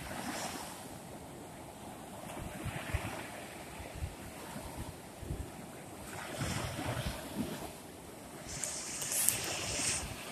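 Small Gulf of Mexico waves breaking and washing up a sandy beach, the surf rising in a swell every few seconds. Wind buffets the microphone with low thumps.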